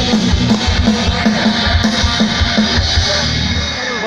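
A live rock band playing through a loud PA system: a drum kit with a regular kick-drum beat under guitars. The drums drop out near the end.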